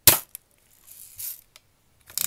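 Daisy Red Ryder BB gun firing a single shot: one sharp pop right at the start. It is followed by a faint click, a soft rustle about a second in and another faint click.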